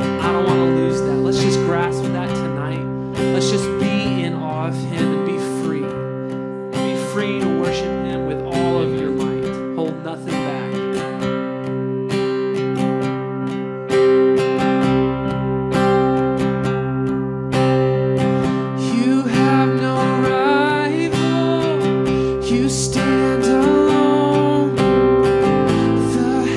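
Live band music: an acoustic guitar strummed steadily over held keyboard chords.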